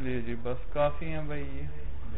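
A man's voice making long, wavering, drawn-out sounds without clear words, over a steady low hum.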